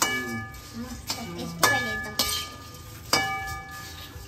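A metal ladle stirring puffed-rice chivda in a metal kadhai, knocking against the pan about four times. Each knock rings out with a bell-like tone that fades.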